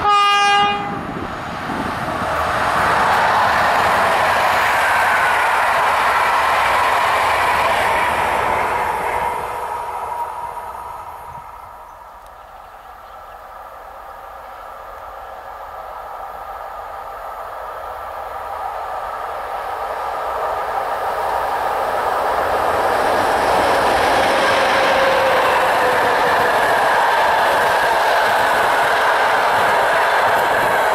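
A train horn sounds one short blast as a passenger train approaches, then the train passes at speed with wheel and rail noise and clickety-clack, fading away. A second passenger train then approaches and passes loudly, with a falling tone about three-quarters of the way through.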